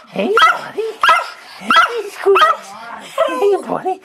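Small white spitz-type dog giving a quick run of short whining yelps, about two a second, each rising and falling in pitch: excited greeting vocalising at its owner's return.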